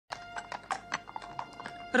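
Horses' hooves clopping in a string of irregular strikes, over a held note of film music.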